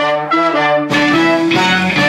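A small wind section of trumpets, trombone and saxophone playing a phrase of held chords together, stepping to a new chord about every half second, recording the instrumental part of a song.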